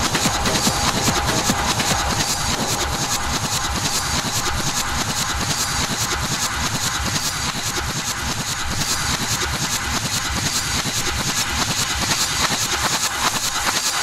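Techno playing in a live DJ set: a stripped-down section of rapid, dense, buzzing percussion over a rumbling low end, holding at a steady level.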